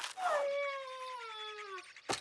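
A cartoon character's voice giving one long whining note that slowly falls in pitch, after a short click at the start.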